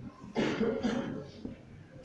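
A person coughing twice in quick succession, a little way in.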